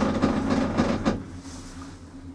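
Doppelmayr detachable six-seat chairlift's carrier rolling over a line tower's sheave train, a fast run of rattling clunks that stops about a second in, over a steady low hum.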